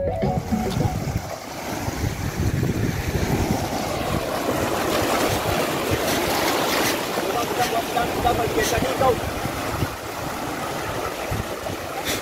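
Sea surf breaking and washing over rocks along the shore, a steady rushing noise.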